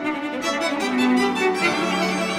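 Solo cello bowing a melody of held notes that moves to a new pitch a few times, over an accompanying string orchestra.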